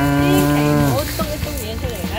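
A cow mooing once: a single low, steady call held for about a second that drops in pitch as it ends.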